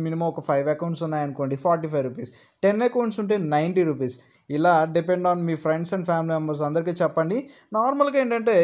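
A man talking in Telugu, explaining, with two short pauses, over a faint steady high-pitched whine.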